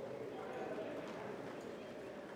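Indistinct chatter of spectators, with a few faint hoof steps of a horse walking on soft arena dirt.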